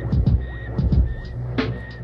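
Experimental electronic music: a deep pulse that drops in pitch repeats about every two-thirds of a second, three times, over a steady low drone, with short high tones and bursts of hiss between the pulses.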